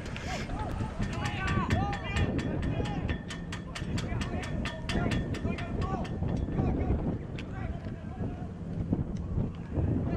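Unclear shouts and calls from footballers on the pitch, heard from the stand over wind rumble on the microphone. A fast series of faint clicks runs through the first half.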